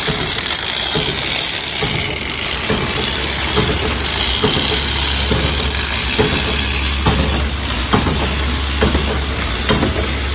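Copper fin rolling machine running, its forming rollers pressing thin copper strip into corrugated flat fin: a steady low hum and hiss with irregular clicks and rattles, more frequent in the second half.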